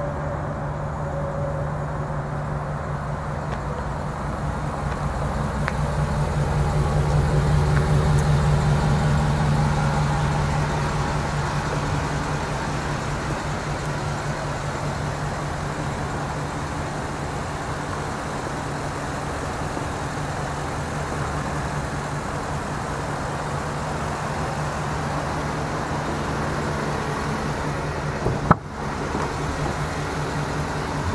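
Ford E-350 box truck's 5.4-litre V8 idling steadily, growing somewhat louder for a few seconds in the first third. A single sharp knock comes near the end.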